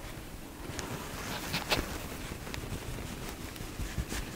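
Quiet room noise with a few faint soft taps and rustles, as a makeup sponge is dabbed against the skin of the face to blend in liquid foundation.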